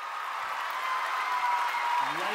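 A large theatre audience applauding and cheering, with long high-pitched screams held over the clapping, growing louder.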